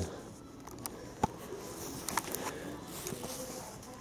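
Quiet indoor room tone, with one sharp click about a second in and a few fainter ticks.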